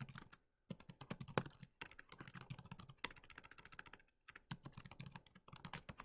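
Typing on a computer keyboard: a fast, faint, irregular run of key clicks with a few brief pauses between bursts.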